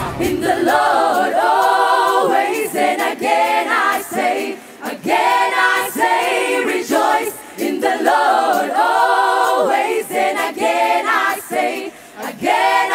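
Mixed choir of women and men singing a cappella in close harmony, in phrases with short breaks. The backing band drops out right at the start, leaving the voices unaccompanied.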